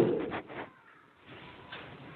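A man's spoken phrase trails off and falls in pitch in the first half-second. A pause follows, with near silence and then faint room hiss.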